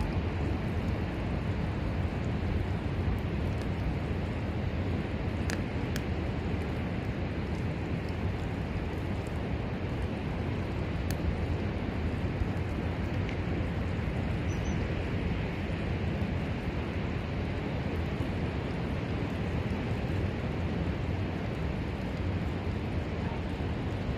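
Steady wind rumble on the microphone outdoors, heavy in the low end, with a few faint clicks.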